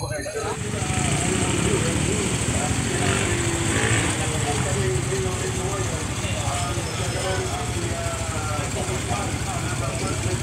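Small Honda motorcycle's single-cylinder four-stroke engine running steadily at idle, with voices talking over it.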